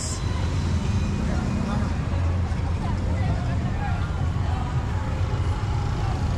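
Street traffic, motorcycles and other vehicles passing with a steady low engine rumble, and a crowd's voices faintly behind it.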